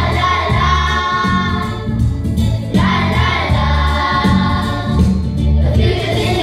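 A children's choir singing an English song into microphones, amplified through a PA, over an instrumental backing with a steady bass line.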